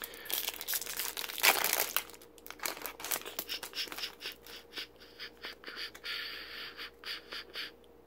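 Foil wrapper of a trading-card booster pack crinkling and tearing in the hands, with short rustling scrapes as the cards inside are slid out and handled.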